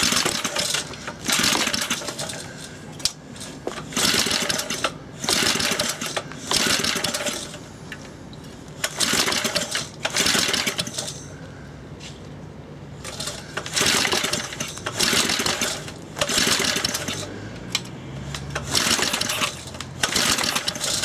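Briggs & Stratton 60102 2 hp single-cylinder engine being pull-started over and over, about a dozen quick recoil-starter pulls in runs with short pauses between. The engine turns over on each pull but does not start.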